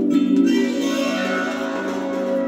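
Music played from a vinyl record on a turntable: sustained tones held over a steady low layer, with the sound turning fuller and brighter just after the start.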